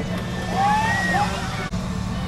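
A steady low mechanical hum, with a voice calling out briefly in the middle.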